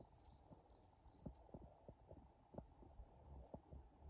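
Faint bird song: a quick run of about five short, high chirps in the first second and a half. Soft low thumps and rumble sit underneath throughout.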